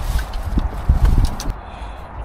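A few light, irregular knocks and rattles as electric scooters are grabbed and moved about, over a steady low rumble of handling noise.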